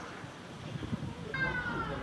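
A single high-pitched animal call, falling slightly in pitch, lasting about half a second near the end, over faint outdoor background.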